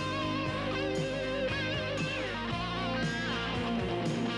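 Rock band playing an instrumental passage: an electric guitar holds sustained lead notes with wide vibrato, sliding down in pitch twice, over bass and drums.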